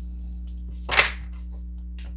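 Oracle cards being handled: one brief papery swish about a second in, over a steady low hum.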